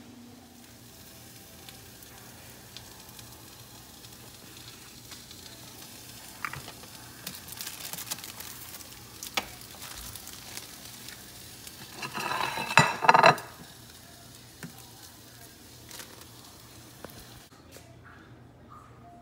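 Food sizzling steadily in a frying pan, with a few light clicks and, about two-thirds of the way through, a louder clatter lasting a second or so.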